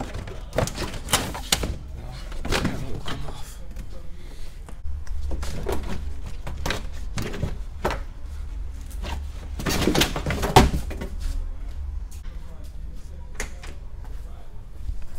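Irregular knocks, clicks and clunks of plastic trunk trim, push pins and hand tools being handled inside a car trunk, with the loudest thunk about ten and a half seconds in, over a low steady hum.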